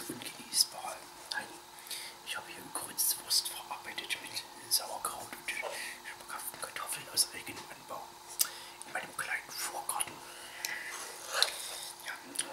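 A metal fork scratching and clicking against a frying pan in short, irregular strokes, with soft whispering.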